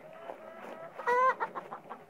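Chickens clucking in short low notes, with one loud, brief call about a second in.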